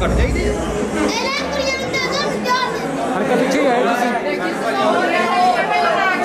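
Several people talking at once: overlapping chatter with no single clear voice.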